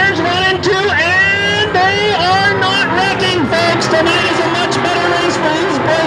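A track announcer's voice, its pitch rising and falling, over the steady sound of several dirt-track stock car engines racing at a green-flag start.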